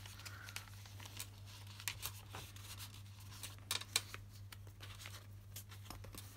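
Paper notebook pages being turned and handled, then a ruler laid down on the page: soft paper rustles and a few light taps and clicks, over a faint steady low hum.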